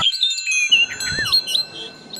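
High chime-like tones ringing on, with quick chirping whistles that glide up and down over them, fading toward the end.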